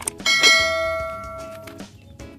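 A single bell-like ding, struck about half a second in and ringing out for about a second and a half.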